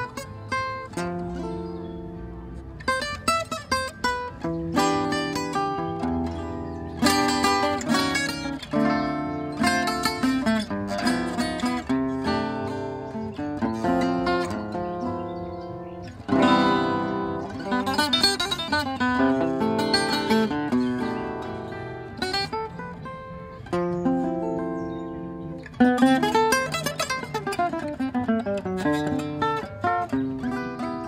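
Solo gypsy jazz guitar, an oval-soundhole Selmer-Maccaferri-style acoustic, playing sharp-attacked strummed chords and single-note lines, with fast descending runs partway through and near the end.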